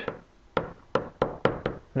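Pen strokes tapping against an interactive whiteboard as a word is handwritten: a quick run of about seven sharp taps.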